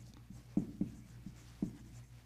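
Dry-erase marker writing on a whiteboard: a series of short strokes, about three a second, as the words are written out.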